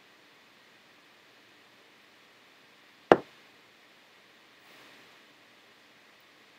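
A drinking glass set down on a table: one sharp knock about three seconds in that dies away quickly, over quiet room tone.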